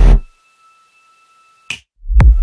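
An electronic dance track with a heavy bass and beat stops abruptly just after the start, leaving near silence with a faint steady high tone. Near the end a single short snap sounds, and the beat comes back in right after.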